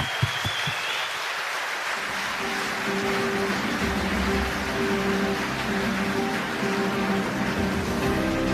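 Audience applauding. Ceremony music comes in under the clapping about two and a half seconds in, with a low bass line joining about four seconds in.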